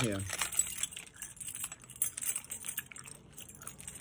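Metal keychain with dangling charms jangling and clinking as it is handled, in scattered light clicks.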